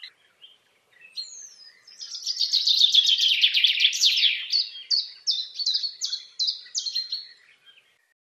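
A songbird singing: a fast trill from about two seconds in, then a run of repeated falling notes, about three a second, fading out near the end.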